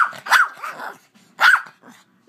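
Yorkshire terrier barking: short, high-pitched barks, two in quick succession at the start and another about a second and a half in.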